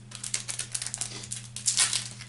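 Trading-card pack wrapper crinkling and rustling in the hands: a quick run of dry crackles, loudest near the end.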